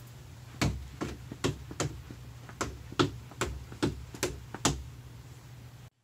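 Quick alternating toe taps on the bottom stair step: about eleven light knocks, roughly two and a half a second, that stop about a second before the end. A steady low hum runs underneath.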